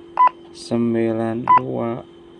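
Motorola GP2000 handheld radio's keypad beeping twice, one short tone per key press, as a frequency is typed in digit by digit.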